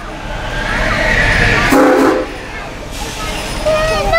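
Steam train of the Frisco Silver Dollar Line: a rush of train noise builds over about two seconds, with a short whistle blast about two seconds in.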